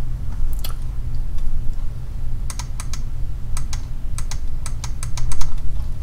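Scattered light clicks of a computer mouse, a couple early and then a run of about a dozen irregular clicks in the second half, over a steady low hum.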